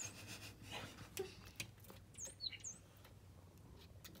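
A small songbird chirping faintly: a few short, high chirps, with two close together about two seconds in.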